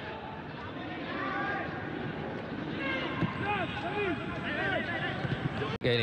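Several voices calling and shouting across a football pitch, picked up by the broadcast's pitch-side microphones, cut off by a brief dropout near the end.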